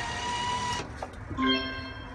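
Bill acceptor of a photo-booth machine pulling in a 1,000-yen note with a motorised whir that stops just under a second in. About half a second later comes a short electronic tone from the machine as the note is accepted.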